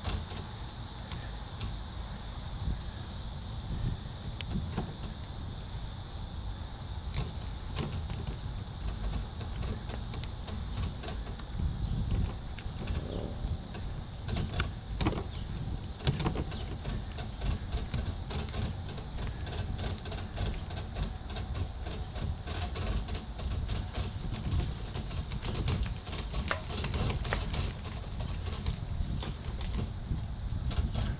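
Bicycle rolling along a concrete sidewalk, heard from a bike-mounted camera: a steady low rumble of wind and tyres, scattered light clicks and rattles from the bike and trailer over the pavement, and a steady high hiss.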